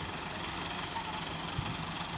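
Massey Ferguson 385 tractor's diesel engine idling steadily, with one short knock about one and a half seconds in.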